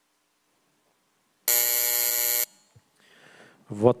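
An electronic buzzer sounds once, a loud, steady buzzing tone for about a second that cuts off sharply, marking the close of a plenary vote. A man begins speaking near the end.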